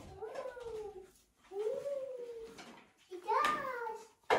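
A toddler vocalizing without words: three short high-pitched calls that glide up and down in pitch, the last one near the end.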